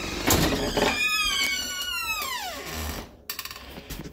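A house cat meowing: one long, high meow that holds and then slides down in pitch as it fades.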